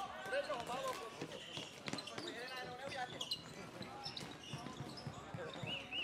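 Floorball play on a plastic court: players shouting to each other, with several sharp clacks of plastic sticks striking the ball and the floor.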